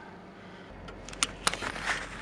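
Low, steady drone of the 1989 Toyota MR2 heard from inside its cabin, starting a little way in, with a scatter of sharp, irregular clicks and knocks from about a second in.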